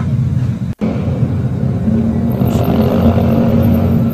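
Loud motorcycle engine noise rising from the street below, heard from a mid-floor apartment: a steady low drone mixed with city traffic, cutting out for an instant under a second in.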